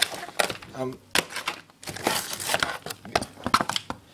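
Plastic food packaging being handled: rigid plastic meat trays crinkling, clicking and knocking in bursts as they are picked up, moved and set down on a counter.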